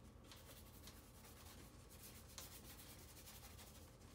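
Faint, scratchy strokes of a paintbrush dragging acrylic paint across paper, repeated one after another, with one sharper stroke about halfway through.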